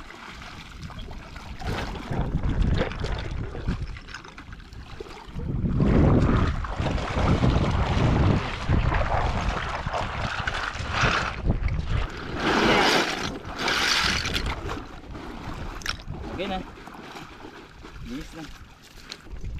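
Shallow river water sloshing and splashing as bags of bangongon snails are swished and rinsed in it, with gusts of wind buffeting the microphone.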